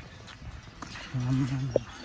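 Faint footsteps knocking on the steel grating deck of a pedestrian suspension bridge. About a second in, a man makes a short held vocal sound.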